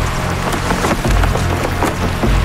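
Cloth banner flapping hard in strong wind, a quick irregular run of sharp snaps and cracks, over a deep pulsing rumble.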